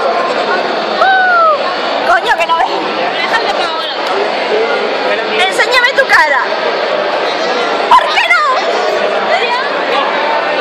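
Indoor crowd chatter with close, excited voices, including a short high squeal that rises and falls about a second in and more yelping voice sounds around the middle and near the end.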